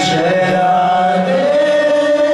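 Devotional kirtan chanting: voices singing a mantra together over a sustained instrumental accompaniment.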